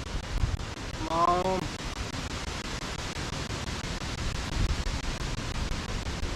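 Wind buffeting the microphone: a steady, gusting rumble and hiss. A man makes a short voiced sound about a second in.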